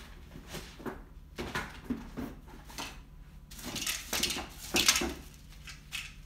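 Plastic packaging bags rustling and crinkling in irregular bursts as boxed RC helicopter parts are handled, with a busier stretch of rustling about four to five seconds in.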